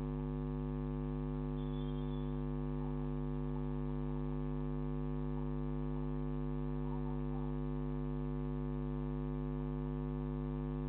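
Steady electrical mains hum, a constant low buzz with a stack of unchanging overtones, picked up by a security camera's audio. It holds at one level throughout.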